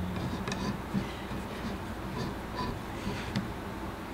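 A turned wooden table column being unscrewed by hand from its round wooden base: a few faint, scattered ticks and creaks of wood turning on wood, over a low steady hum.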